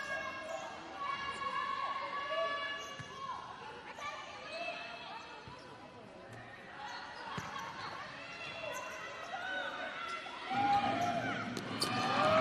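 Live futsal play on an indoor court: the ball is kicked and bounces on the hard floor with sharp knocks, and players' shoes squeak, with voices echoing in the hall. It gets busier and louder near the end.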